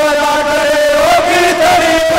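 A man singing a bait, a Saraiki/Punjabi Sufi devotional verse, through a microphone, in long held, wavering notes.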